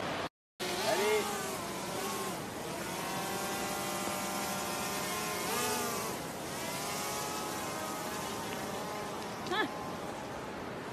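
Small quadcopter drone buzzing in the air, its propeller whine holding steady and then sliding up and down in pitch as it manoeuvres, over the steady rush of a river. A short rising squeak near the end.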